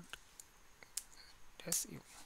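Computer keyboard keystrokes: a few separate sharp key clicks as a short command is typed and entered, the loudest about a second in.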